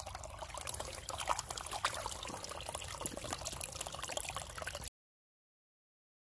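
Small spring trickling and dripping, with many small sharp clicks over the steady run of water. It cuts off abruptly about five seconds in.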